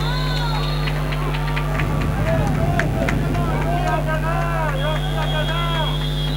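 Indoor handball play on a hardwood court: many short squeaks of sports shoes and sharp ball and footfall knocks, over a steady low hum.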